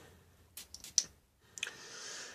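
A few light clicks from handling a cologne bottle, then near the end a single hissing spray from its pump atomizer.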